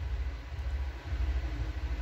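A low, steady background rumble with a faint even hiss.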